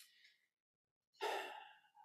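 A man's audible breath close to a microphone, about half a second long and fading away, a little past a second in; otherwise dead silence.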